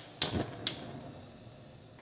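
Gas stove igniter clicking twice, about half a second apart, as the burner is lit.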